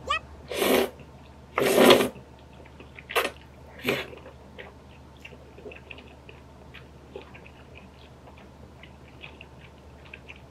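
A person slurping long noodle-shaped rice cakes in cream sauce: two long slurps about half a second and two seconds in, two short sucks near three and four seconds, then faint, quiet chewing of the chewy wheat tteok.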